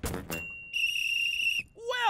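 A single whistle blast, one steady high note lasting about a second, signalling the end of the game.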